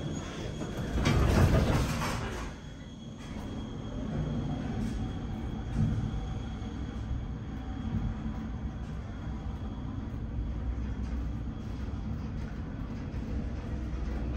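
Elevator car travelling between floors: a steady low rumble and hum of the car in motion, with a louder surge of noise in the first two seconds as it starts off.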